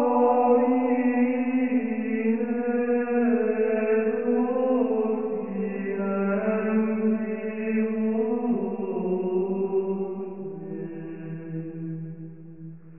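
Slow chant-like singing, long held notes that step slowly downward in pitch, fading away toward the end.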